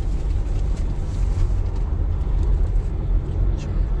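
Car cabin noise while driving on a concrete toll road: a steady low rumble of tyres and engine heard from inside the car.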